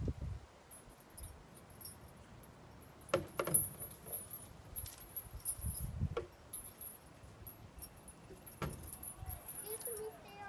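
Chains of hanging playground stepping pods jangling and clunking as a child steps from one swinging pod to the next: a few sharp rattles spread through, the clearest about three seconds in, then around six and nine seconds.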